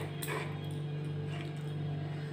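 A dog giving two short high cries in the first half-second, over a steady low hum.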